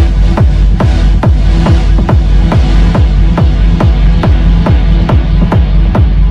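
Techno music: a four-on-the-floor kick drum at about two and a half beats a second over a sustained bass line, with the treble narrowing toward the end.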